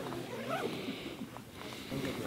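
A woman's wordless, strained vocal sounds as she straightens up after crawling out of a tent, her knees stiff and sore.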